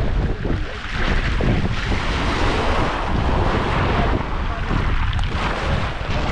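Wind buffeting the microphone, a heavy uneven rumble, over the steady wash of shallow sea water and small waves.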